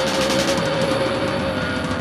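Punk rock band recording playing without vocals: distorted electric guitar holding one sustained note over fast, even, rattling playing.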